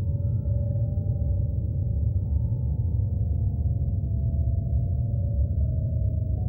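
A low, steady rumble under faint, sustained droning tones that hold and slowly shift in pitch, an ambient soundtrack drone.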